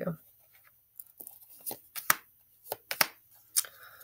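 Tarot cards handled and shuffled by hand while clarifier cards are drawn: a run of soft, irregular card snaps, slides and taps.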